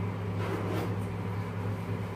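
Steady low hum of a room air conditioner, with faint soft rustles of a hydrogel face mask sheet being peeled apart by hand about half a second in.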